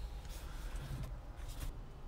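Quiet car-cabin background: a faint, steady low hum with light rustling or tapping from handling the controls.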